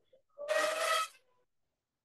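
A short sound effect from an online quiz game, lasting under a second, about half a second in, as the game registers the chosen answer.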